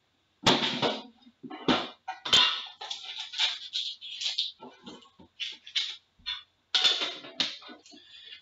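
A metal Upper Deck Premier tin being opened and its foil-wrapped pack lifted out and unwrapped: a run of irregular clanks, clicks and crinkling rustles, with sharp clicks about half a second in, about two and a half seconds in, and near the end.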